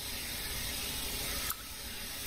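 A steady hiss of background noise, with a single sharp click about one and a half seconds in.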